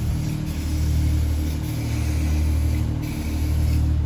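A large engine running steadily, giving a low, even droning hum that holds the same pitch throughout.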